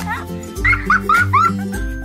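Background music with a steady beat and a repeating deep bass note, with a quick run of short, high calls that bend in pitch laid over it.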